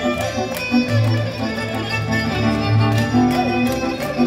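Hungarian folk dance music led by a violin over a steady bass, playing a lively tune, with sharp clicks through it.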